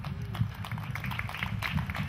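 Scattered hand clapping from a small audience just after a live rock song ends.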